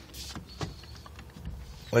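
Low, steady rumble of a 1986 Chevrolet Caprice's stock 5.7-litre V8 running, heard from inside the cabin, with a few faint clicks.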